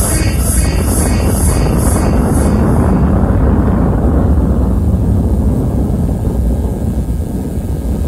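A loud rushing noise effect over a deep rumble, its top end pulsing evenly a few times a second at first and then filtering away, leaving the low rumble: a DJ transition effect between tracks in a funk mix.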